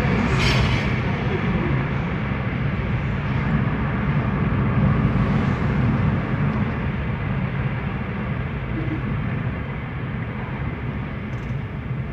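Fiat Siena running along, heard from inside the cabin: a steady low rumble of engine and road noise that eases off a little over the last few seconds.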